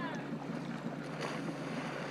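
A jet ski's engine runs steadily at low speed, a constant hum with water churning at the stern.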